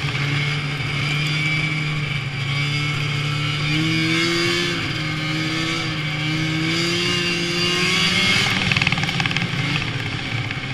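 2003 Arctic Cat Firecat F7 snowmobile's two-stroke twin engine running at a steady trail pace, with a hiss from the track over the snow. The revs rise a little about four seconds in and again around eight seconds, then ease off near the end.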